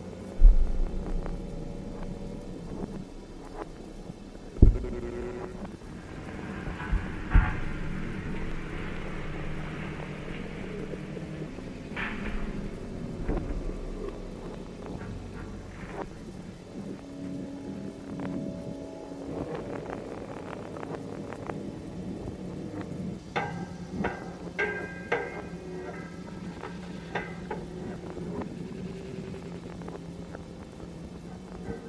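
Experimental electronic music built in Max/MSP and Ableton Live: a steady low hum under sparse, sharp hits, starting with a heavy low boom about half a second in. Near the end, scattered glitchy clicks and short pitched blips cluster together.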